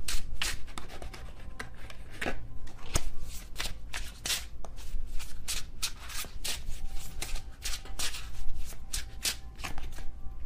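Tarot deck being shuffled by hand: an irregular run of quick card snaps and rustles.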